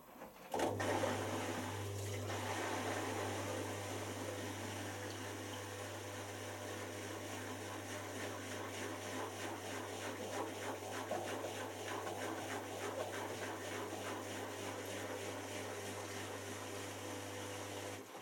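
Miele Professional PW6055 washing machine drum turning through one wash rotation: steady motor hum with water and wet laundry sloshing and tumbling. It starts suddenly about half a second in and stops near the end as the drum comes to rest.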